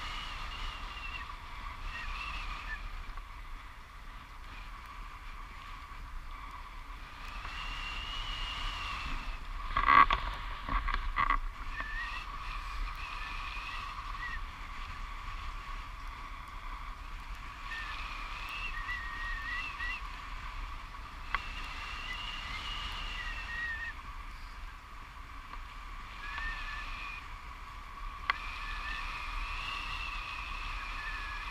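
Wind rushing past the camera during a tandem paraglider flight, with a steady high whine and higher wavering whistles that come and go. A quick cluster of knocks and rattles, the loudest sound, about ten seconds in.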